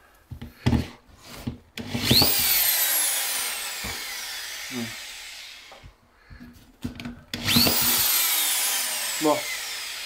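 Cordless drill boring holes through plasterboard beside a cut-out opening, in two runs of about four seconds each. Each whine jumps up as the trigger is pulled and then falls slowly. A few short knocks come before each run.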